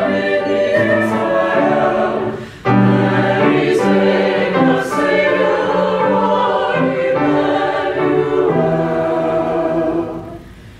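Mixed SATB choir singing in sustained chords. The singing breaks off briefly about two and a half seconds in, then a new phrase begins.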